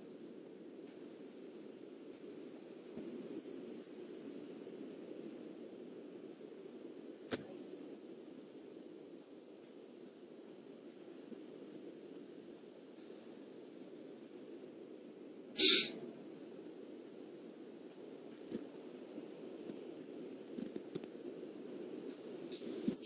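Faint steady hiss of an open microphone carried over a video call. About three quarters of the way through, one short, loud burst of noise lasting about half a second stands out.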